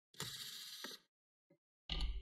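Small metallic clicking and rattling of a screwdriver working out the fan screws in a laptop's plastic chassis, lasting under a second, then a short knock near the end.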